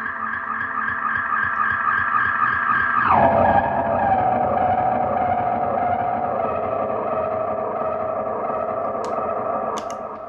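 JCraft Push Delay analog delay pedal self-oscillating behind a clean electric guitar, making an ambient drone of layered steady tones instead of ordinary echoes. About three seconds in the drone drops sharply in pitch and then sinks slowly. Two clicks come near the end as the pedal's footswitch is worked.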